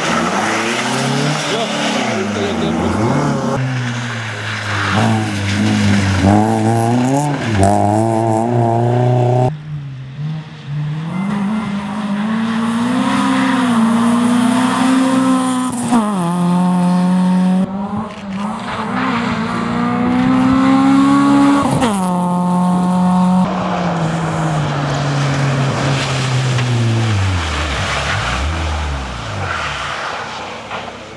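Honda Civic rally cars' four-cylinder engines revving hard on a snowy stage, in several passes joined by cuts. The pitch climbs and then drops sharply several times, and near the end the engine note falls away.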